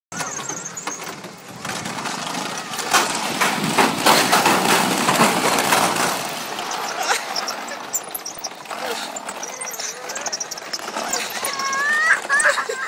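Metal rollers of a long roller slide clattering in a rapid, rattling run as riders slide down, loudest about three to six seconds in. A voice rises in pitch near the end.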